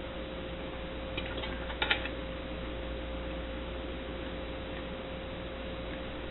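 Quiet room tone: a steady hiss with a faint hum, broken by two small clicks, one about a second in and a slightly louder double one near two seconds.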